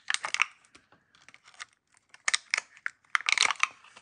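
Thin clear plastic cups being handled and pulled apart: irregular crinkling clicks in four or five short bursts.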